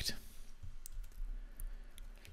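A few faint, sharp computer clicks over a low steady hum.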